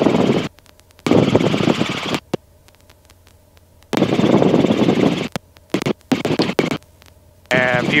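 Bursts of rushing noise about a second long on a Robinson R22 helicopter's intercom, several times, each switching on and cutting off abruptly as the voice-activated mic gate opens and closes. A faint steady hum fills the gaps between bursts.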